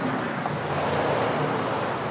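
Steady outdoor rushing noise without words, swelling slightly around the middle.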